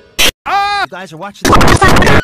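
Choppy, heavily edited cartoon audio: a brief sharp burst, then a voice holding a bending "doo" note for about a second, then a loud distorted blast of noise.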